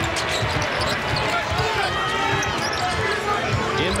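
Basketball dribbling on an arena's hardwood court, a run of irregular thumps over the steady hubbub of the crowd.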